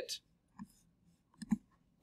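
A few faint computer mouse clicks: one about half a second in and a short cluster of two or three near the middle.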